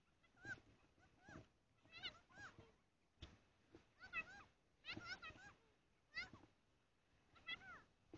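Faint, short, high-pitched animal calls, each rising then falling in pitch, singly or in quick runs of two or three, about a dozen in all against near silence.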